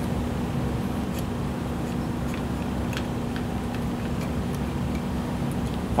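Faint, irregular metallic ticks from a hand-turned piston pin puller drawing a wrist pin through a piston, over a steady low hum.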